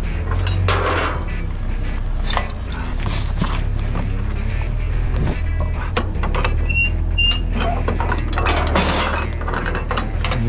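Ratchet wheel straps on a car-hauler trailer being worked loose: irregular metallic clicks and rattles of the ratchet and strap hardware, over a steady low hum.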